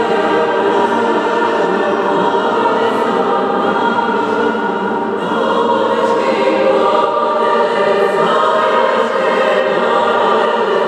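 A youth choir of mixed voices singing, holding long sustained chords.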